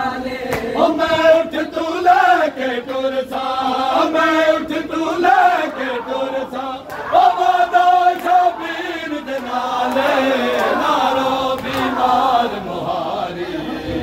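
A group of men chanting a noha, a Shia mourning elegy, in drawn-out sung phrases. Sharp, regular slaps of matam, hands striking bare chests, keep time, clearest near the start and end.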